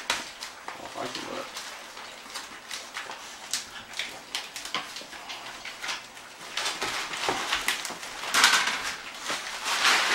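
Gift wrap and plastic packaging crinkling and tearing in irregular bursts, loudest about eight and a half seconds in and again near the end, with dog sounds mixed in as the dogs nose at the package.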